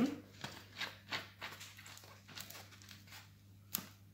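Quiet handling sounds on a plastic-covered work table: a large plastic bottle being set down, with scattered light knocks and rustles and one sharper click near the end.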